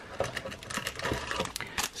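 Handling noise: a string of small irregular clicks and light rustling as a foil card pack is pulled out of a cardboard box.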